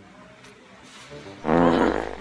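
A short, loud roar lasting about half a second, coming suddenly about one and a half seconds in after a quiet stretch.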